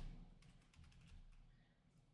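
Near silence, with the fading end of a brief knock at the very start and a few faint clicks about a second in.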